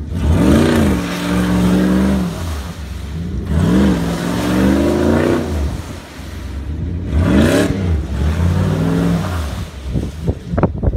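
SUV engine revved hard four times in a row as its wheels spin in deep mud, the vehicle stuck. Each rev climbs quickly and holds for a second or two before dropping back, the third one short, with the hiss of spinning tyres and flung mud underneath.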